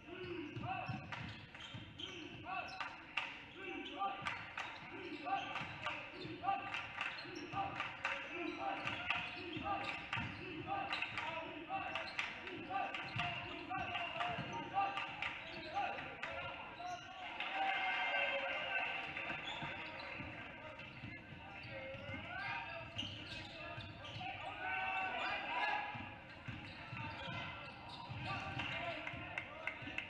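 Basketball dribbled on a hardwood gym floor, a steady bounce a little more than once a second through the first twelve seconds or so, amid other sharp sounds of play and indistinct voices in the echoing gym.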